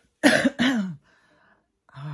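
A woman coughing twice in quick succession into her fist, a quarter of a second in. The coughs come from a chest she says has some wheeze.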